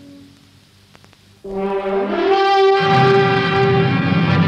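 Film-score brass enters suddenly on a loud held note about one and a half seconds in, after a near-quiet moment with a few faint clicks. A second note slides up to join it, and a low rumble builds beneath from about three seconds in.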